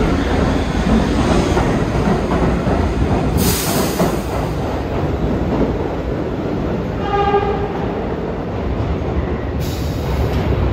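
New York City subway train pulling out of the station, its wheels and motors rumbling on the rails as the cars pass and then draw away down the tunnel. There is a brief high hiss about three and a half seconds in, and a short horn blast a little after seven seconds.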